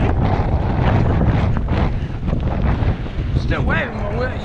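Gusty wind buffeting a handheld action camera's microphone, a dense steady rumble. A man's voice starts near the end.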